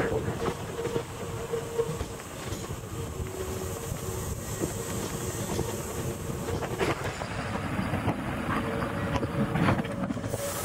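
Hankyu 3000-series electric train pulling in close along the station platform, its wheels clicking over the rail joints, over a steady rolling rumble and a steady hum.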